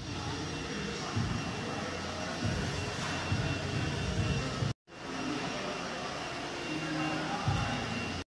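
Steady gym room noise: a broad hum with faint voices mixed in, broken by a brief dropout a little over halfway through.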